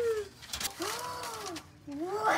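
A woman's wordless voice: a falling "ooh" trailing off just after the start, then a short hum that rises and falls in pitch about a second in.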